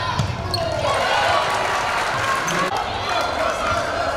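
Live basketball game sound in a gym: a ball bouncing on the hardwood court amid a steady din of crowd voices.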